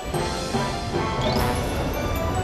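Animated-film soundtrack music with a crash sound effect hitting as it begins and a short rising swish about a second and a half in.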